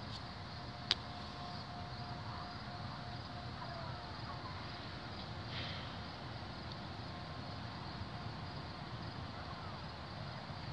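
Quiet outdoor background: a steady low rumble with a faint, steady hum-like tone, and a single sharp click about a second in.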